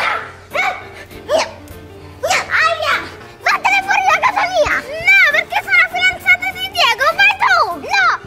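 Two young girls shouting and exclaiming at each other, with background music running underneath. After a quieter first few seconds, the voices come thick and fast.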